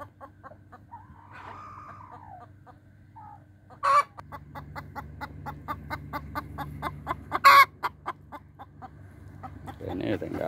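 Domestic chickens clucking, short calls repeating about four a second, with a drawn-out falling call early on and two louder, sharp squawks about four and seven and a half seconds in.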